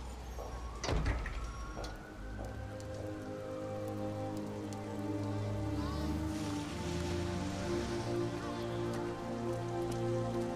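Steady rain falling on pavement, with a low hit about a second in, then film-score music of held, sustained chords swelling up beneath the rain.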